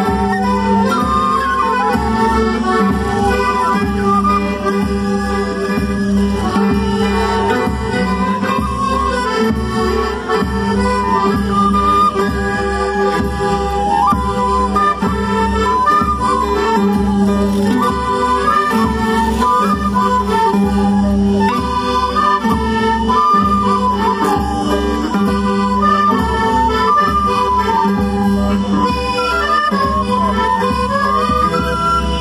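Traditional Andean festival music for the Qhapaq Negro dance: a reedy melody with held notes over a steady low drum beat, playing without a break.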